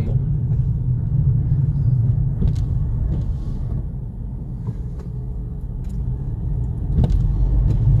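Steady low rumble of a car's engine and tyres on the road, heard from inside the cabin while driving in city traffic; it eases a little around the middle and builds again near the end.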